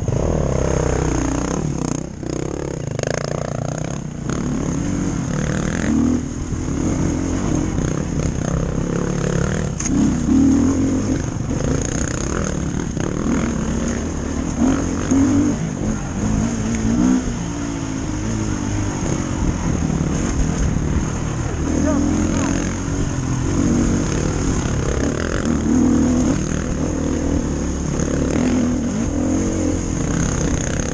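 Dirt bike engine revving up and down as it is ridden along a narrow dirt trail, the throttle rising and falling every second or two.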